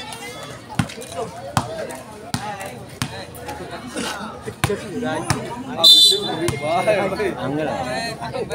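A volleyball bounced on the hard court again and again, about one bounce every three-quarters of a second, then one short blast of a referee's whistle about six seconds in, over voices from players and spectators.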